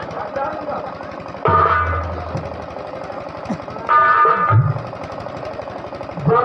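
Live stage music: a rapid, continuous drum roll. Two loud sustained chords enter about one and a half seconds and four seconds in.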